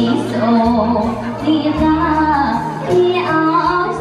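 A woman singing a slow melody through a microphone, holding and sliding between notes, over band accompaniment with a bass line and cymbal ticks.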